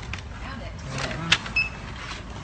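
Checkout-counter handling noise with faint murmured voices. A sharp click comes just past a second in, followed right after by a short, high electronic beep.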